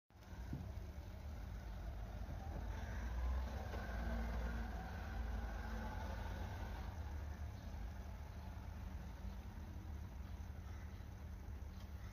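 Steady low rumble of outdoor background noise, swelling slightly a few seconds in.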